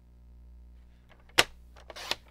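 A single sharp click from a paper trimmer about a second and a half in, as cardstock is set against the trimmer and its cutting rail, followed by a few softer ticks over a low steady hum.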